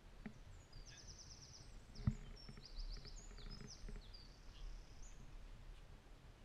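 Small songbirds chirping and singing fast high-pitched trills, with a single sharp knock about two seconds in.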